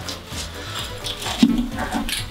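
Rolling pizza cutter crunching through a crisp, overbaked crust and scraping the metal pizza pan in a few short strokes, with one sharp knock about a second and a half in.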